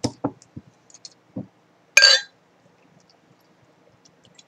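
Glass beer bottle and drinking glass being handled on a wooden table: a few knocks, then a loud clink with a brief ring about two seconds in, followed by faint fizzing ticks as the beer starts to pour into the tilted glass.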